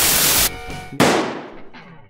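Edited transition sound effect: a half-second burst of hissing noise, then about a second in a sharp bang that dies away over about a second.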